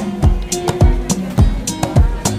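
Background music with a steady drum beat and held melodic notes.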